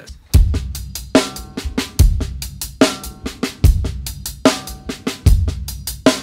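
Acoustic drum kit playing a paradiddle groove in 16th notes: right hand on the hi-hat, left hand on the snare, accenting the first note of each four-note group. Loud accents come about every 0.8 s, the bass drum landing with every other one, and hi-hat and snare strokes fill in between.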